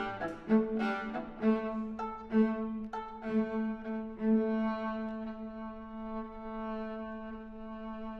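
Viola and cello duet, both bowed: short accented notes over a steady low drone, settling about halfway into long held notes.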